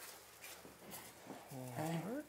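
Faint scraping of a black slotted spatula stirring a thick ketchup-and-bacon sauce in a stainless skillet as it cooks down.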